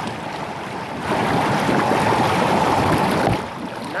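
Hot tub jets churning the water: a steady rushing and bubbling, louder from about a second in until shortly before the end.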